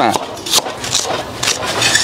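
Chinese cleaver chopping ginger and scallions on a thick wooden chopping board: a few sharp knocks about half a second apart.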